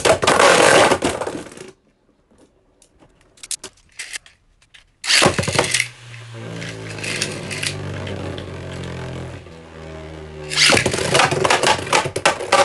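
Beyblade Burst spinning tops (Super Hyperion and Union Achilles) rattling and clashing against each other on a plastic stadium floor, then a near-silent gap. About five seconds in comes a sudden loud clatter, followed by a steady spinning hum and, near the end, a fresh run of rapid clashing.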